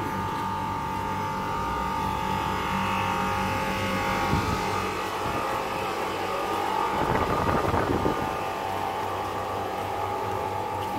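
Outdoor air-conditioner units beside a tent running with a steady hum, with a brief louder patch of noise about seven seconds in.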